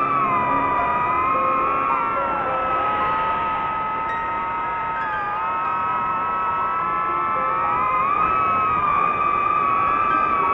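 DJI FPV drone's motors and propellers whining in flight: several close tones that sink and rise together with the throttle, dipping about two and a half seconds in and again around five seconds, then climbing back near the end.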